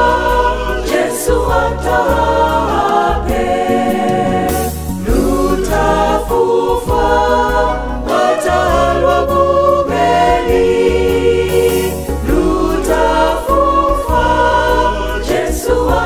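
Mixed choir singing a gospel song in harmony, with a deep bass line underneath.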